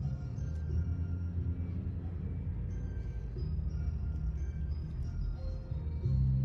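Background music: a steady low drone with scattered short, higher held notes over it.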